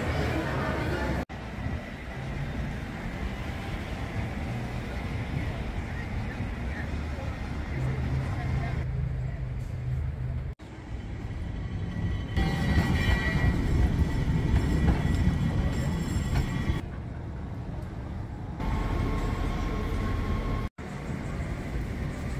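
Ambient location sound from several short clips joined by abrupt cuts: background crowd chatter and a steady low rumble of rail vehicles.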